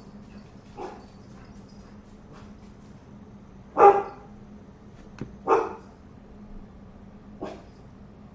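A dog barking in separate single barks: faint at first, two loud barks in the middle about a second and a half apart, then a softer one near the end.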